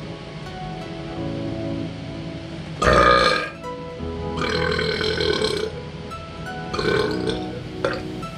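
A man burping three times over background music. A short, loud burp comes about three seconds in, a longer one follows around five seconds, and a shorter one comes near seven seconds.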